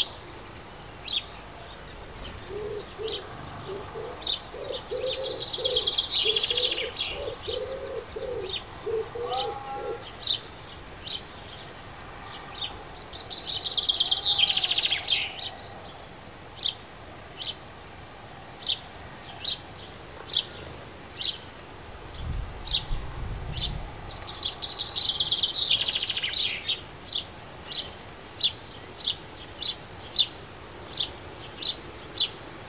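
Small garden songbirds chirping: a steady run of short, sharp chirps about one a second, broken three times by a brief burst of busier twittering song. A run of low repeated call notes sounds in the first third, and there is a short low rumble about two-thirds of the way in.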